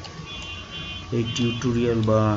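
Two short high-pitched electronic-sounding tones, about a second apart, then a man's voice begins talking.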